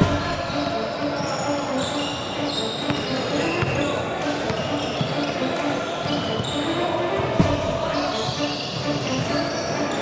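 Live basketball game in a gym: players' shoes squeaking on the hardwood floor, the ball bouncing and players calling out, in an echoing hall. A sharp thump stands out about seven seconds in.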